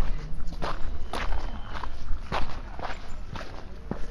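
Footsteps of a person walking at a steady pace, about two steps a second, over a low background rumble.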